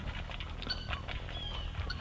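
A goat eating from a metal tub of grain pellets and dried tobacco leaves: faint, irregular small clicks and rustles of it chewing and nosing through the dry feed.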